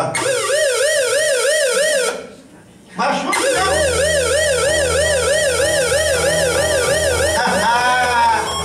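Electronic siren-like warble, probably from a synthesizer: a steady tone wobbling up and down about four times a second. It cuts out for about a second two seconds in, then resumes over a low bass hum, ending in one rising-and-falling sweep.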